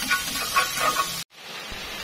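Minced garlic sizzling in hot cooking oil in a frying pan as it is fried until golden. The sizzle cuts off abruptly a little past halfway and comes back quieter.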